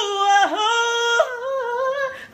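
A single voice singing unaccompanied in a gospel song, holding a high note with a quick dip and return in pitch about half a second in, then moving to another held note a little past a second in.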